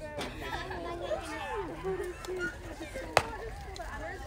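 A softball pitch smacking into the catcher's mitt: one sharp pop about three seconds in. Spectators' voices chatter throughout.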